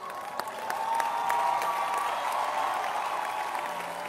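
Congregation applauding, with crowd voices mixed in. It swells about a second in and then slowly dies down.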